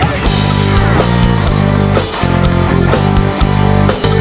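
Live rock band playing loud, the electric bass holding low sustained notes under guitar chords. The full band comes in right at the start, the chords change about once a second, and there is a brief break right at the end.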